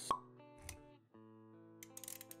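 Intro jingle: a sharp pop sound effect right at the start, a soft low thud a little later, then held synth-like musical notes with a few light clicks near the end.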